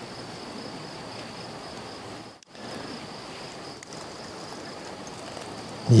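Steady high-pitched buzz of insects over an even background hiss, cutting out for a moment about two and a half seconds in.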